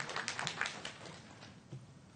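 A few scattered hand claps from the audience, irregular and thinning out within about a second, then quiet room tone.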